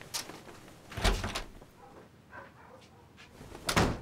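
A door being handled: a knock-like thud about a second in, faint clicks and rustles, then a second sharp thud as the door opens just before the end.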